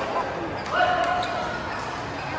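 Echoing badminton-hall sound of players' voices, with a short, loud squeak about two-thirds of a second in.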